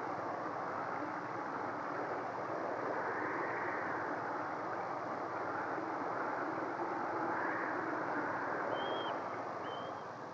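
Wind ambience for a winter night scene: a steady rushing noise that swells and eases slowly, with two brief high chirps near the end.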